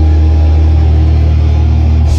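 Live thrash metal played very loud through a festival PA, heavy on the low end: distorted guitars and bass holding a deep, steady rumble, with little cymbal.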